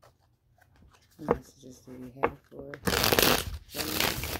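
A deck of tarot cards being shuffled by hand, with a loud stretch of rustling, riffling card noise starting about three seconds in.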